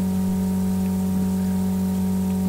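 Steady electrical mains hum, a low buzz with several even overtones and a faint hiss beneath it, unchanging throughout.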